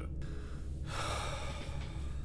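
A man's sharp breath, a gasp of shock, about a second in, over a low steady hum.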